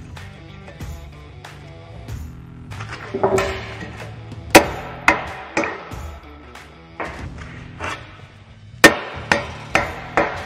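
Hammer blows on a driver set against a strip-till hub bearing, knocking the old bearing out: a few light taps, then two sharp sets of three hard strikes about a second apart, the second set near the end. Background music plays underneath.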